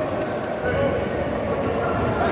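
Spectators' voices and chatter making a steady din that echoes around a large sports hall.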